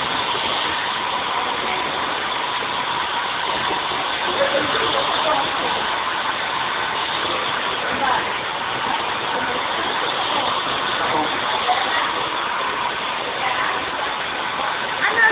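Handheld hair dryer blowing steadily, its motor and fan giving an even rushing whir with a faint steady hum.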